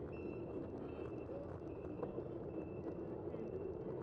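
Steady wind and road noise from a bicycle-mounted camera riding through city streets, with a thin, high, steady tone that breaks off and returns several times.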